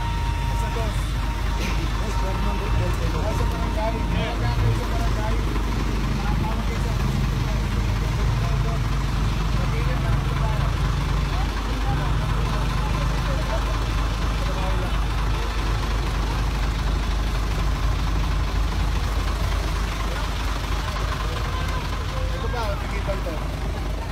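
A vehicle engine idling in a steady low rumble, with indistinct voices of people talking over it.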